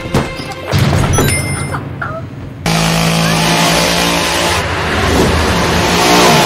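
A few sharp knocks and crashes, then about two and a half seconds in a chainsaw starts running loud and steady at a constant pitch.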